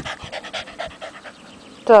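Cavalier King Charles spaniel panting in quick, short breaths, about six a second. The dog is hot.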